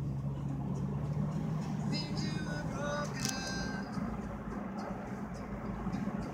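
Steady car engine and road noise heard from inside the cabin, with music playing over it.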